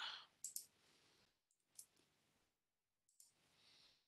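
Three faint computer mouse clicks, about a second and a half apart, the first and last each a quick double click, over a soft hiss.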